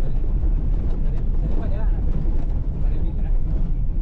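Car driving slowly on a gravel dirt road, a steady low engine and tyre rumble heard from inside the cabin.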